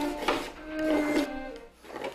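A slow violin melody of long held notes, with a scraping, rubbing sound under it.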